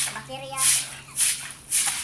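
Short hand broom swishing across wet concrete in quick strokes, about two a second.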